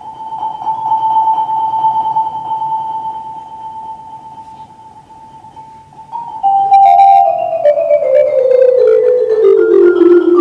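Solo marimba held on a single high note as a mallet roll, swelling and then fading over about six seconds. Then a louder line of rolled notes steps steadily down in pitch.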